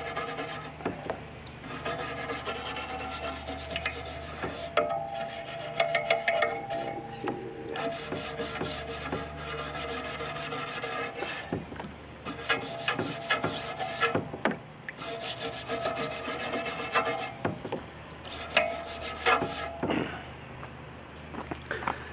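Wire brush scrubbing loosened rust off the steel rim of a Ford Model A spoke wheel that has soaked in citric acid solution, in rapid back-and-forth strokes. The scrubbing comes in bouts of a few seconds with short pauses between and stops about two seconds before the end.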